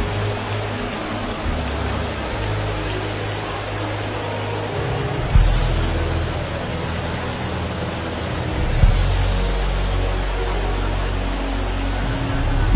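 Soft background music of low sustained chords under a steady haze of congregation noise, with two brief louder swells of noise about five and nine seconds in.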